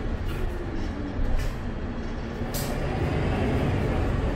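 MAN A22 city bus with Voith automatic gearbox running under way, heard from inside the cabin: steady low engine and road rumble with a faint drivetrain whine. Brief hisses come about a third of a second, one and a half and two and a half seconds in, the last the strongest.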